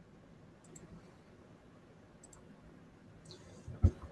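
Faint computer mouse clicks, a few scattered through the stretch, with a short sharp thump near the end.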